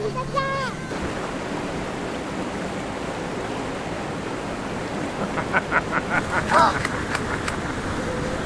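Steady rushing noise of wind on the microphone outdoors. A bit past the middle comes a run of short, pitched clicks, about seven a second, lasting about two seconds.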